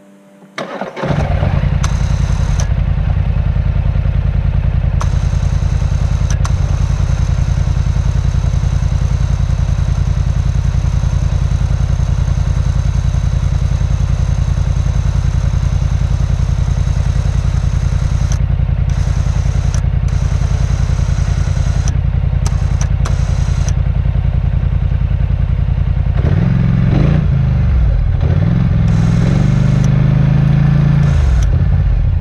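Polaris Scrambler 1000 ATV engine starting about a second in and then running steadily, with the revs rising and falling near the end.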